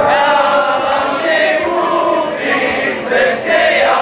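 A group of voices singing a Moravian folk song together, loud and steady throughout.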